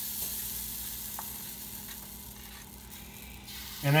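Pancake batter sizzling on a hot griddle: a steady high hiss that eases off slightly.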